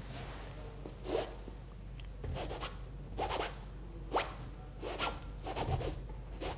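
A brush loaded with oil paint rasping across stretched canvas in short strokes, about six of them, each a brief scrape.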